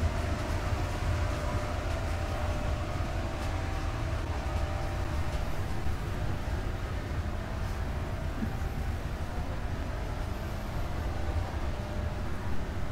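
A steady low rumble with a faint, even hum above it, unchanging throughout.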